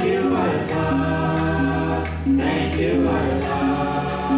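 A group of male voices singing a devotional song in unison, with band accompaniment including a bass guitar.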